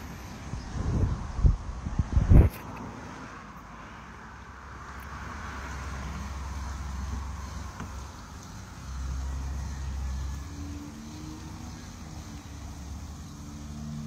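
Wind gusting over an outdoor phone microphone, with a few heavy low bumps about one to two and a half seconds in and swells of rumble later. A faint low steady hum comes in near the end.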